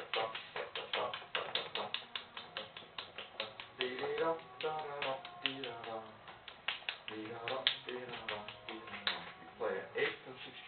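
Quick sharp finger snaps, several a second, keeping a beat, with a man's voice singing short melodic phrases over them a few seconds in and again near the end.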